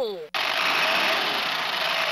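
Electronic sound effect from the Bright Starts Having A Ball Swirl and Roll Truck toy's speaker: a steady rushing noise, a truck sound effect, that starts suddenly about a third of a second in and holds level.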